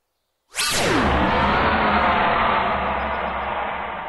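A dramatic sound-effect sting in an animated soundtrack: about half a second in, a sudden swoosh falls steeply in pitch and opens into a loud, sustained, reverberant wash that slowly fades.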